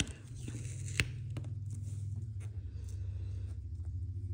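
Sticker sheets handled by hand on a desk: a few light ticks and faint rustles of paper and fingernails, the clearest about a second in, over a steady low hum.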